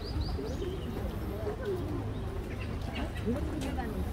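Chatter of many people talking in a crowd. A bird sings a rapid run of high repeated chirps, about five a second, which stops about half a second in.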